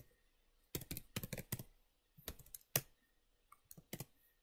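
Keystrokes on a computer keyboard: a quick run of taps about a second in, a second short run a little past two seconds, then a few scattered taps.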